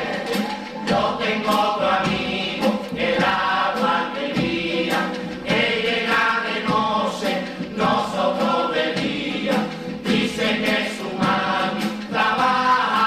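All-male chirigota chorus singing a carnival song together, accompanied by strummed Spanish guitars and drum strokes.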